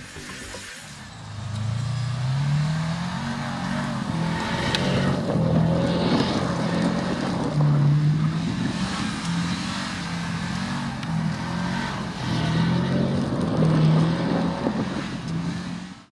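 Subaru WRX STI's turbocharged flat-four boxer engine revving hard as the car is drifted on snow. It comes in about a second in and climbs, then rises and falls repeatedly with the throttle before cutting off at the end.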